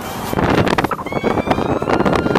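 Wind noise on the microphone with the road noise of a moving car, loud and rapidly fluctuating from about a third of a second in.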